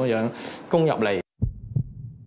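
A man speaking Cantonese that stops abruptly just past a second in, then after a moment of dead silence two low, dull thuds like a slow heartbeat, a sound effect marking a cut.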